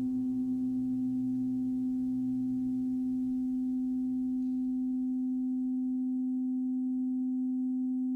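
A steady, low, pure electronic sine tone, held unchanged, with fainter higher tones above it: the sleep 'frequency' of an affirmation track. A lower ringing underneath dies away by about the middle.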